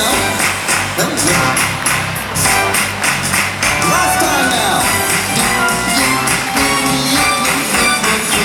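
Upbeat children's song played over a stage PA, with a steady beat and rhythmic clapping on the beat.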